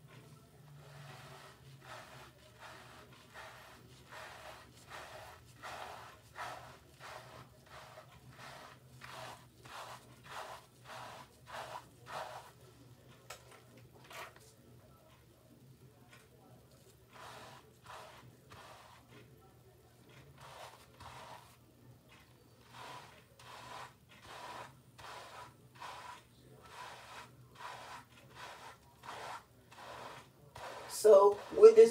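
Detangler brush strokes through shampoo-lathered hair: a faint, soft scrape repeated about twice a second, with a couple of short pauses in the middle. The brush is detangling twisted hairs and setting the wave pattern.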